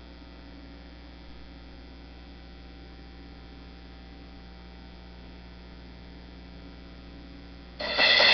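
Steady, quiet electrical mains hum with a row of evenly spaced overtones, unchanging throughout. Music comes in right at the end.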